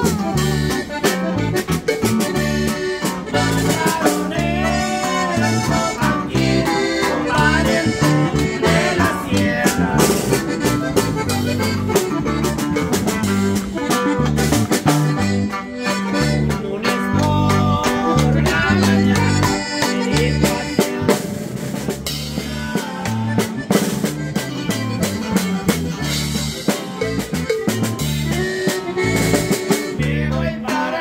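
Live band playing an instrumental passage: twelve-string acoustic guitar, electric bass and a snare drum with cymbal, in a steady rhythm.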